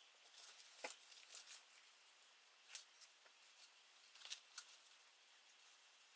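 Faint rustling of a cotton fabric wallet being handled as its inner pocket is pulled out, with several small sharp clicks scattered through.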